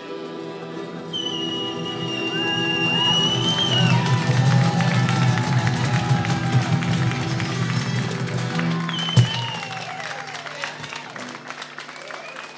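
A street band's acoustic and electric guitars and several male voices hold a song's final chord, with a high whistle over it and clapping. The music dies away about nine seconds in, with a single knock as it ends.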